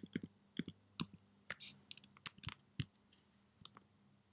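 Computer keyboard and mouse clicks: about a dozen quick, irregular clicks over the first three seconds.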